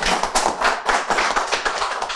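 Applause: several people clapping their hands in quick, dense, overlapping claps.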